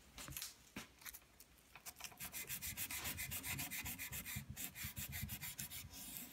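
400-grit aluminium oxide sandpaper rubbed by hand along the carbon brake track of a bicycle rim. There are a few light scratches at first, then quick, steady back-and-forth strokes from about two seconds in. The sanding scrubs off brake-pad material gummed up on the track.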